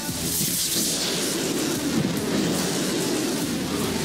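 Model rocket motor igniting at liftoff: a sudden burst of hiss just after the start, then a steady loud rushing noise as the rocket climbs.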